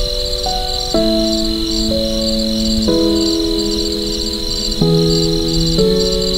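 Crickets chirping in steady, rapidly repeated trills, over soft slow piano chords that change about every one to two seconds.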